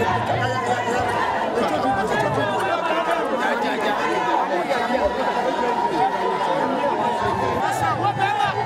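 Crowd chatter: many people talking over one another at a steady level.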